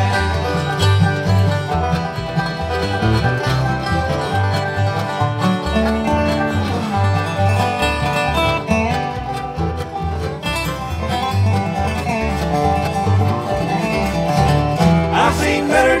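A bluegrass band plays an instrumental break without singing: banjo, mandolin, acoustic guitar and upright bass, with a resonator guitar (dobro) playing sliding notes in the lead.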